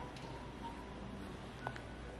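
Low indoor room hum with a few faint, short electronic beeps, one a little after the start and a couple more near the end.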